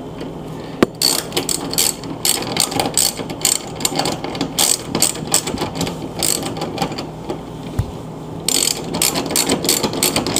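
Hand socket ratchet clicking in fast runs as it turns and tightens refrigerator door hinge bolts. The clicking starts about a second in, eases off for a moment near seven seconds, and picks up again near the end.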